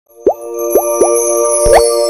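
Channel logo intro sting: three quick rising bloops, then a longer upward swoop with a low thump, over a held bright synth chord with sparkling high tones.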